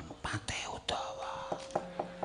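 A thin, steady whistle-like tone starts about a second in and holds, with light knocking about four times a second under it. Just before the tone there is a short hissing rustle.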